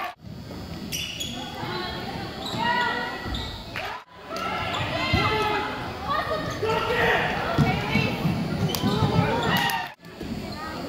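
Indoor basketball game in a gym: many voices from spectators and players mixed with a basketball bouncing on the hardwood court and a few sharp knocks, echoing in the hall. The sound drops out for an instant about four seconds in, where two clips are cut together.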